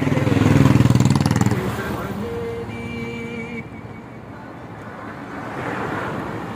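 A motorcycle passes close by, its engine loudest in the first second and a half, then fading into steady road traffic noise. Another vehicle draws nearer toward the end.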